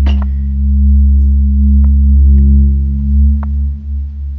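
A loud low drone held steady, with a few fainter steady tones above it: an ominous horror-film sound effect. A few faint clicks sound over it.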